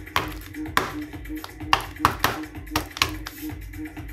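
Steel palette knife scraping and tapping across thick wet acrylic paint on paper in about seven short strokes, over background music.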